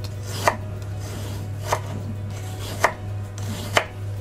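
Kitchen knife slicing a cucumber into thin rounds on a bamboo cutting board: four crisp knocks of the blade meeting the board, about one a second.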